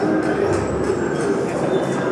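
Children making a continuous, rough hooting and blowing noise through hands cupped over their mouths, heard as a replay through a screen's speakers.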